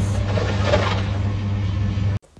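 Steady low hum of a car's cabin, the running car heard from inside.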